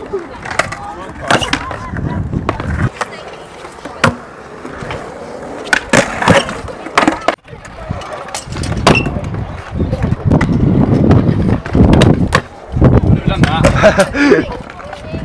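Stunt scooter and skateboard wheels rolling on concrete, with a rumble that rises and falls. Many sharp clacks and knocks run through it, and the rolling is loudest in the second half.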